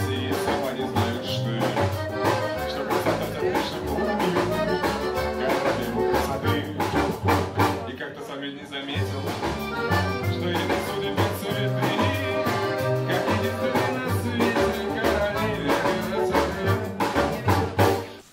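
Live rockabilly band playing: hollow-body electric guitar, upright double bass, drum kit and accordion together, over a steady beat and a moving bass line.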